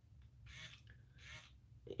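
Near silence: room tone with a low hum and two faint, short hisses.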